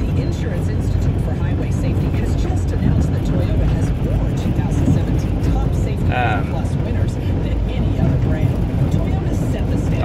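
Car driving on a gravel road, heard from inside the cabin: a steady low rumble of tyres and engine. A man's voice breaks in briefly about six seconds in.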